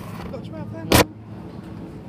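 A single short, sharp knock on the handheld camera about halfway through, over a steady low hum.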